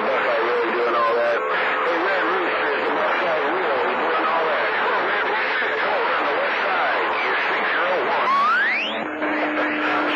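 CB radio receiving channel 28 skip: several distant stations talk over one another through static and fading, and the voices are garbled and unintelligible. About eight seconds in, a whistle rises quickly in pitch, followed by a steady low heterodyne tone.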